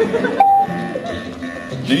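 Background music from a 1950s-style filmstrip record soundtrack, with one short beep tone about half a second in, the cue to advance to the next frame. The music swells again just before the end.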